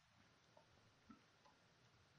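Near silence: faint room tone with two or three very faint short ticks.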